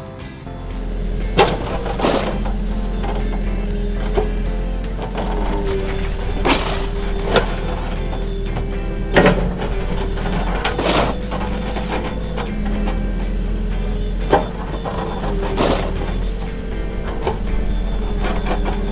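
Cartoon digging sound effects over background music: a steady low engine rumble from a toy-like digger, with about eight sharp hits and scrapes as holes are dug, spaced a second or more apart.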